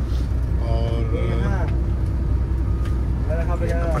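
Steady low rumble inside a double-decker coach, its engine idling, with people talking in the background about a second in and again near the end.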